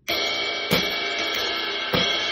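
A Paiste ride cymbal played with a stick in a jazz swing ride rhythm. It comes in suddenly and rings on as a continuous bright wash between the strokes.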